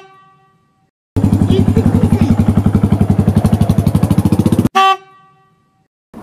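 A short bright chime that rings and fades, then a motorcycle engine running at a steady idle with an even, fast throbbing beat for about three and a half seconds, cut off abruptly, followed by a second ringing chime.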